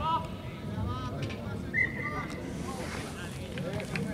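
Wind rumbling on the microphone with faint, distant voices from the pitch, and a short high steady tone about two seconds in.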